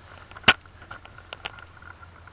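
Handling noise from a handheld camera as it is turned around: one sharp click about half a second in, then a few fainter clicks and rustles.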